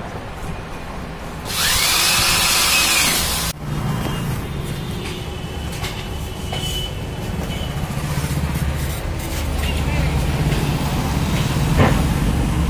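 Cordless drill running for about two seconds, its motor whine rising, holding and dropping as the bit bores into an aluminium frame profile, then cutting off suddenly. A low, steady rumble follows.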